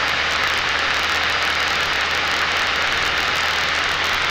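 Single-engine propeller aircraft in flight: a steady drone of engine and propeller with rushing air noise, unchanging throughout.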